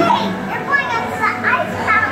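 Children's voices talking and calling out in high, rising and falling tones, over faint background music.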